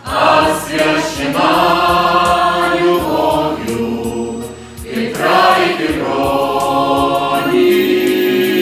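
A mixed choir of men's and women's voices singing a song together, with a brief lull between phrases about four and a half seconds in.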